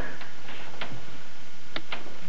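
A few short, sharp clicks over a steady background hiss, about four in two seconds and not evenly spaced.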